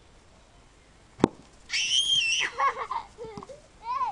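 A sharp click about a second in, then a young child's high-pitched excited squeal, trailing off into lower vocal babble.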